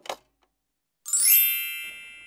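A bright, high ding struck once about a second in, ringing on with many chime-like overtones and fading slowly: an editing sound effect.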